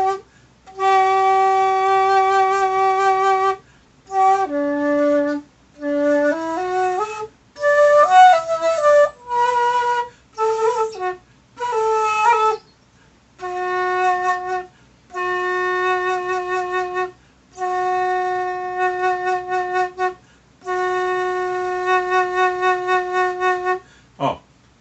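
Xiao, a Chinese bamboo end-blown flute, playing long held notes with a short run of changing notes in the middle. The later held notes begin steady and then pulse in loudness toward their ends: vibrato produced by the diaphragm.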